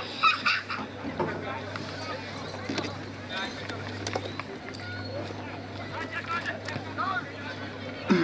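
Scattered, unintelligible shouts and calls from players and onlookers at a football ground, over a steady low hum.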